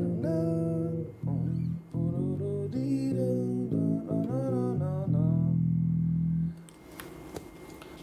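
Squier Classic Vibe '60s electric bass played fingerstyle: a short melodic line of held notes that stops about a second and a half before the end, with a voice singing along over parts of it.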